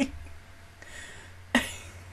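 A woman coughs once, briefly, close to a desk microphone, about one and a half seconds in.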